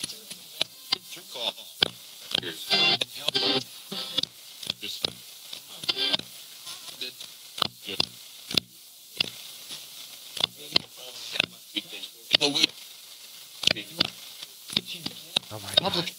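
Paranormal Systems MiniBox Plus ghost box sweeping through AM radio stations. A steady, thin hiss of static is chopped a few times a second by brief, uneven fragments of broadcast voices and sound.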